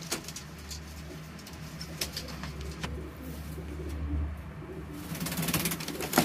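Domestic pigeon cooing in a loft, a low rolling coo heard most plainly in the second half, with a few sharp clicks and scuffs from the birds moving on the floor litter.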